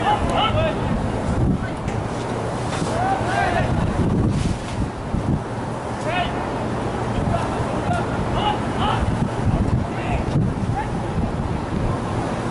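Wind buffeting the microphone with a steady low rumble, while distant voices shout short calls across a soccer pitch every second or two.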